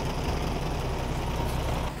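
Low-floor city bus engine running with a steady low rumble as the bus pulls in along the curb at the stop.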